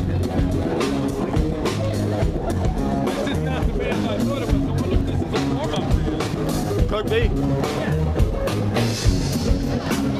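Live band playing amplified funk-rock music, with drum kit, bass and electric guitar.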